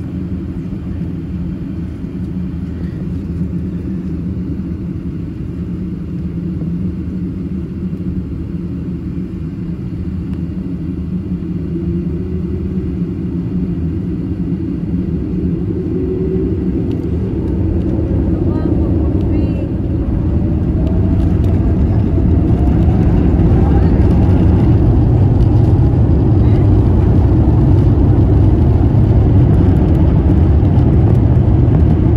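Airbus A350-900's Rolls-Royce Trent XWB engines heard from inside the cabin. A steady low rumble grows louder through the second half, with a whine rising in pitch from about halfway: the engines spooling up to takeoff thrust.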